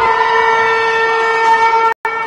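Ice rink game horn sounding one long, steady, loud blast that cuts off suddenly near the end.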